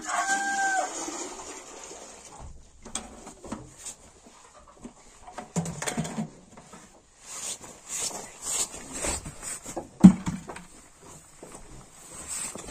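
A rooster's crow tails off in the first second. Then comes the splash of water poured from a plastic bucket into a metal pail. Scattered knocks and rustles of buckets being handled and feet in straw follow, with one sharp knock about ten seconds in.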